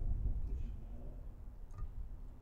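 Wind buffeting the microphone, a steady low rumble, with one short sharp click near the end.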